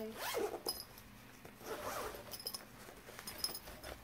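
Zipper of a fabric camera sling bag being pulled open in two strokes, about a second apart, followed by a few light clicks and handling rustles.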